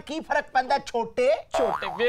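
A man's voice rapidly repeating a mock-Italian gibberish word in short syllables. About a second and a half in, a short comic sound with a falling pitch cuts in.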